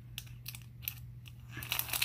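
A white paper packet crinkling as hands open it: scattered short crackles, growing busier near the end.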